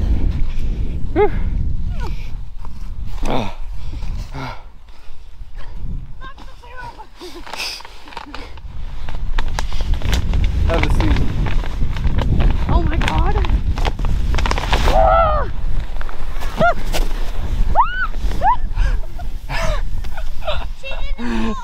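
Heavy low rumbling and buffeting on the camera microphone, with a man laughing about a second in and people calling out with rising voices in the second half. The rumble dips for a few seconds in the first half.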